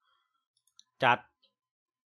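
A single short computer mouse click, about three-quarters of a second in, in an otherwise quiet room, followed by one brief spoken syllable.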